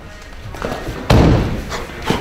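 A rising rush of noise, then a single heavy thud about a second in that dies away over about half a second, with music.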